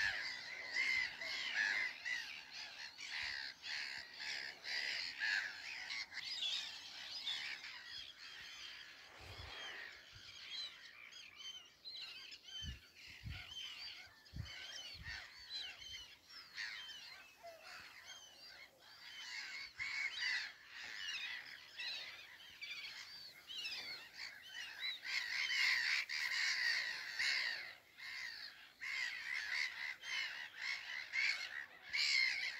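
Chorus of many small birds calling at once, a dense run of short high chirps overlapping one another, fuller near the start and again in the last few seconds.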